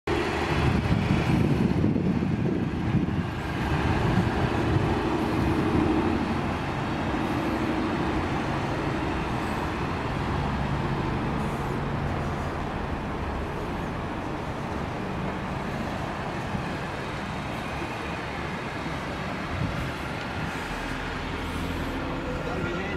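Steady motor-vehicle rumble, louder for the first six seconds and then even.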